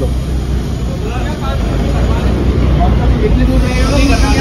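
Steady low rumble of idling vehicle engines at a fuel station, with faint voices in the background.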